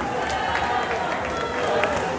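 A packed crowd of many voices talking and shouting over one another, with scattered handclaps.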